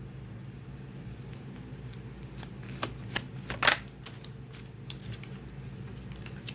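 Tarot cards being handled: a few scattered crisp clicks and snaps, the loudest about three and a half seconds in, over a steady low hum.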